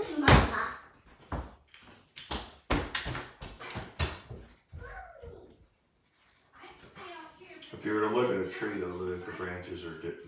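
Sharp knocks and taps of felt-tip markers on a wooden tabletop, about a dozen in the first half, the loudest a thump just after the start. From about halfway a person hums on steady, stepping notes.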